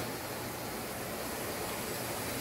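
Steady, even hiss of large-workshop background noise with a faint low hum under it.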